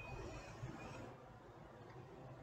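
Faint steady background hiss with no distinct sound, easing slightly about a second in.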